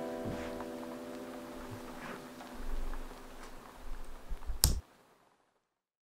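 A strummed guitar chord ringing out and slowly fading, with a few soft knocks over it. A sharp click comes near the end, and the sound cuts off suddenly.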